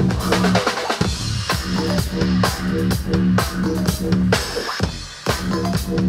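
Live electronic rock band playing: a drum kit beat over a pulsing keyboard bass line, with the music briefly dropping out twice, just before a second in and again about five seconds in.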